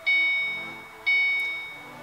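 A 2006 Ford Mustang GT's dashboard warning chime dinging about once a second with the ignition switched on, each ding a bright tone that fades away before the next.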